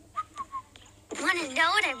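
A brief, faint high whistled tone, then a girl's high-pitched cartoon voice with a wavering, sing-song pitch from about a second in.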